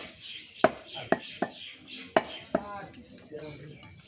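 A broad-bladed butcher's knife chopping beef on a wooden stump block: about five sharp, unevenly spaced chops in the first two and a half seconds.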